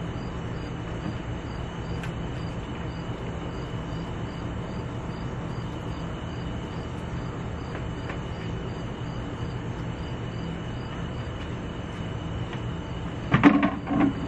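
Outdoor night ambience: insects chirping in a regular pulse about twice a second, with a steady high trill, over a steady low hum.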